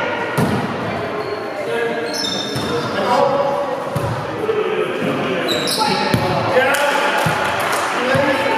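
Volleyball being played in a large echoing gymnasium: several sharp hits of the ball, over steady chatter and calls from the players. Two brief high squeaks come at about two and five and a half seconds in.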